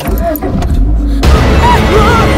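A car engine starts up and runs with a low rumble. About a second in, a tense horror-film score with sliding, wavering notes swells in and becomes the loudest sound.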